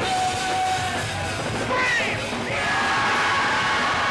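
Punk rock music: a full band playing loud and steady, with a singer holding long notes.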